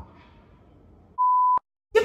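Faint room tone, then a little past a second in a steady, high single-pitch TV test-pattern beep lasting under half a second, cut off with a click into dead silence.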